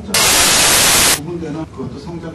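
A loud burst of static hiss, about a second long, that cuts off suddenly and gives way to a man's voice.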